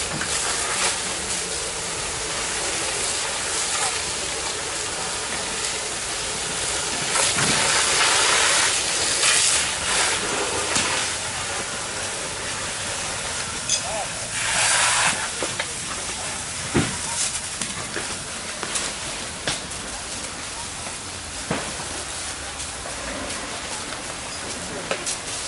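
A fire hose's water jet hitting a burning building, a steady hissing rush with louder surges about eight seconds in and again around fifteen seconds.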